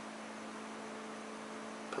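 Steady low electrical hum over faint hiss: room tone with no other events.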